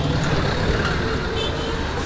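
Steady road traffic noise, with a truck passing close by.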